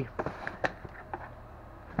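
Clear plastic storage case and cardboard box being handled: a scatter of light clicks and knocks, most in the first second, with one more sharp click at the end.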